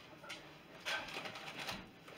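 A person sniffing the inside of an open chip bag held to his nose: a couple of short, faint sniffs.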